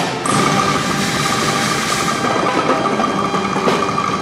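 Guggenmusik brass band holding one long final note after the drumming stops, over a noisy wash of sound with a few scattered hits.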